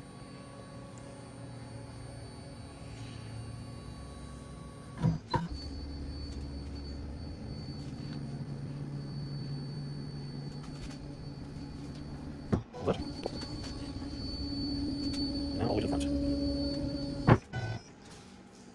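Onefinity CNC's stepper motors driving its ball screws as the machine homes: a steady motor whine in three stretches that differ in pitch and loudness. Short sharp clicks fall about five seconds in, about twelve and a half seconds in, and just before the end.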